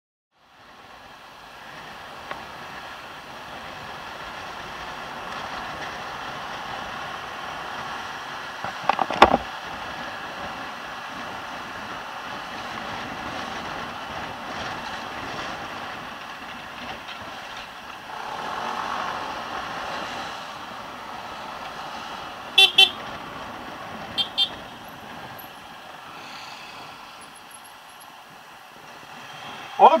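Yamaha Nmax 155 scooter's single-cylinder engine running with wind noise while riding in traffic, with a short loud burst of noise about nine seconds in. A vehicle horn gives two quick double toots about three-quarters of the way through.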